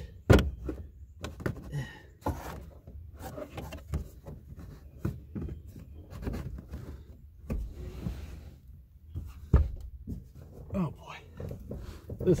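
Plastic rear side trim cover of a Toyota Yaris hatchback being pushed and worked into place by hand: a string of irregular plastic clicks and knocks with rustling between them. The two loudest knocks come about a third of a second in and just before the ten-second mark.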